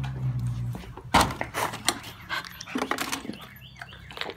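A low steady hum for the first second, then a run of sharp knocks and clatters as dogs are fed from a plastic bowl of dry kibble, the loudest about a second in.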